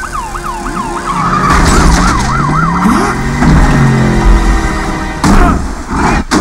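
Siren wailing in quick, repeated rises and falls, while a low sound climbs steadily in pitch beneath it. A loud crash comes about five seconds in.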